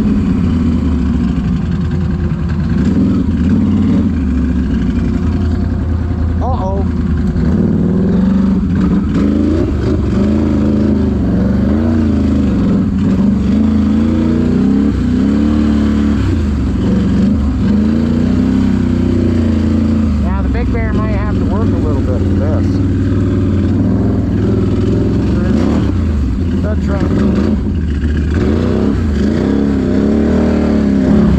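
Can-Am Renegade X mr 1000R ATV's V-twin engine running as it is ridden along a trail, its pitch rising and falling every second or two with the throttle.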